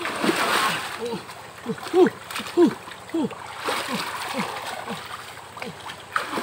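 Water splashing and sloshing in a shallow rocky river as a man wades and works his hands in it, loudest in the first second and again about four seconds in. Running through it is a string of short, low sounds, each falling in pitch, about two or three a second.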